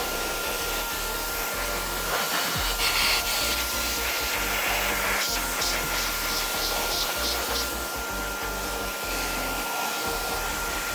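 Pressure-washer jet spraying water onto a car tyre and alloy wheel: a steady, continuous hiss of water spray.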